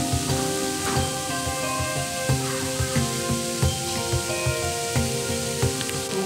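Saga-gyu (Saga beef) steak cubes sizzling steadily on a small ridged cast-iron grill plate over a tabletop flame, under background music.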